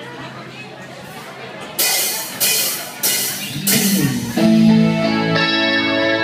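Live band starting up: after a low hum of amplifiers and room noise, four loud drum-and-cymbal hits about a second and a half apart (roughly 0.6 s between hits) begin about two seconds in, then the band comes in with sustained guitar and keyboard chords.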